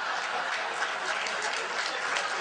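Audience applauding: many hands clapping together in a dense, steady patter.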